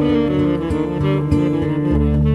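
Jazz recording with guitar playing over steady low bass notes, saxophone close by.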